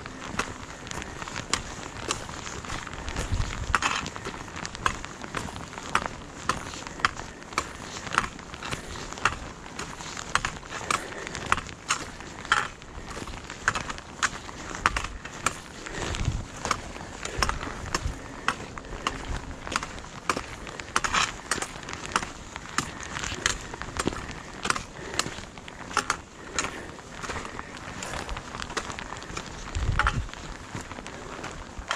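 Walking footsteps and trekking-pole tips striking a rocky gravel trail, a sharp click or crunch about twice a second at a steady hiking pace.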